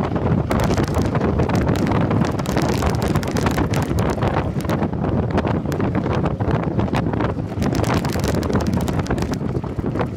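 Wind buffeting the microphone of a handlebar-mounted camera on a road bike moving at speed: a loud, rough, steady rush full of short crackles.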